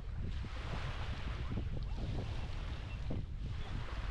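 Small waves washing onto a sandy shore, with wind buffeting the microphone in a steady low rumble.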